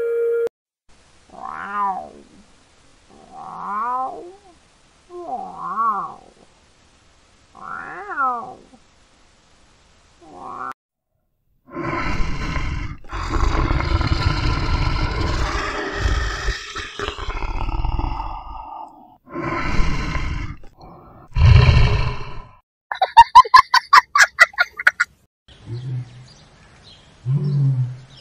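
Lion vocalising: a few short calls that rise and fall in pitch, then long, loud roars and growls through the middle, followed by a quick run of pulsed grunts and a few low grunts near the end.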